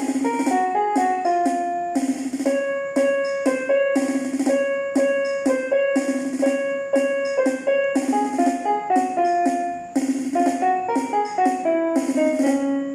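Small portable electronic keyboard playing a simple melody of single notes over a sustained low note, with a steady drum-like rhythm underneath from its built-in accompaniment.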